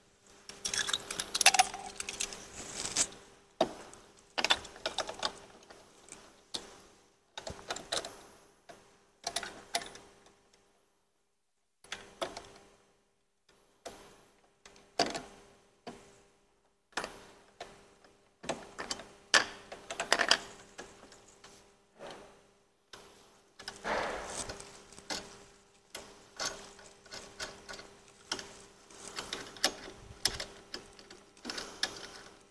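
Stainless steel sanitary tri-clamp fittings being handled and fitted: irregular metallic clicks and clinks as a hinged clamp and gasket are closed around a check valve on a drum pump's outlet and the clamp's wing nut is turned. The clicking stops briefly a little before the middle.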